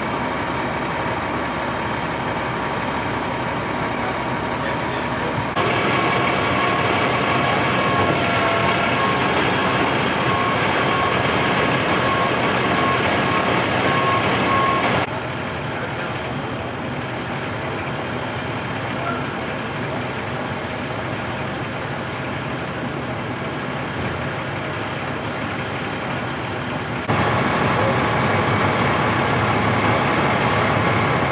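Steady engine rumble of idling fire trucks at a street scene, changing abruptly at each cut. In the middle section a steady high tone turns into a string of evenly spaced beeps.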